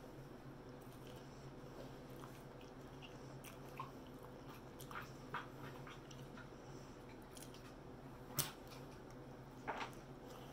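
Close-up chewing and biting of crispy fried pork chop: soft, scattered crunches and mouth clicks, with two sharper crunches near the end. A steady low hum runs underneath.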